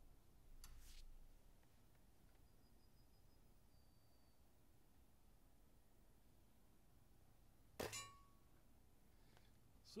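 A single shot from a Diana 54 Airking Pro spring-piston air rifle, about eight seconds in: one sharp crack with a brief ringing tail, against otherwise faint background.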